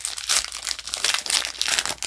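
Foil booster-pack wrapper being torn open and crinkled by hand, a rapid run of irregular crackles.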